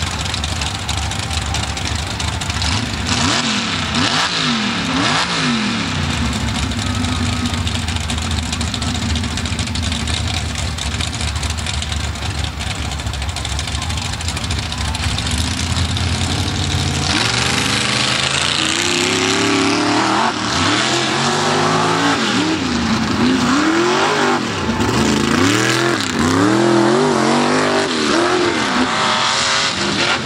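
Two mud-racing trucks' engines revving, their pitch rising and falling, then about seventeen seconds in the race launches and the engines run hard across the mud track, pitch sweeping up and down repeatedly and much louder.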